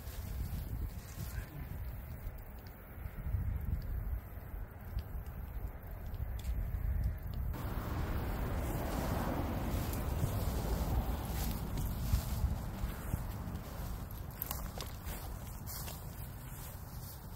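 Wind buffeting a handheld phone microphone in a steady low rumble, with footsteps and light handling noise as the person filming walks through grass; a broader rustling hiss comes in about halfway through.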